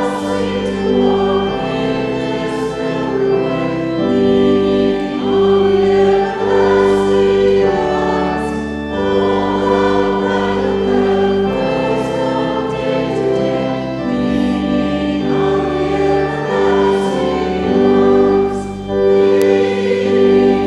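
A church congregation singing a hymn together, with organ accompaniment. The chords and bass notes are held and change every second or two.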